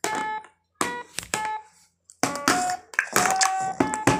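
Children beating a toy drum with plastic sticks, each strike setting off a short electronic tone. A few scattered hits come first, then a quicker run of strikes from about two seconds in.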